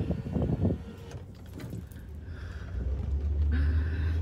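Car heard from inside the cabin: a steady low engine and road rumble that grows louder about halfway through as the car pulls out and picks up speed.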